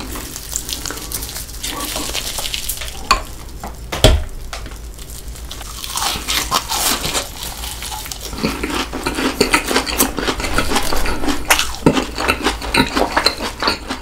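Close-miked crunching and chewing of Cheetos-crusted fried chicken, with many crisp crackles and a couple of louder crunches about three and four seconds in.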